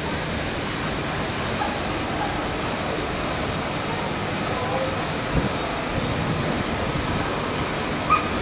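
Steady street noise of car traffic and a vintage tram moving slowly, with voices of passers-by and one low thump about five seconds in.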